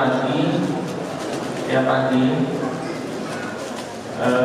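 A man's voice through a microphone in drawn-out, held phrases, quieter toward the end.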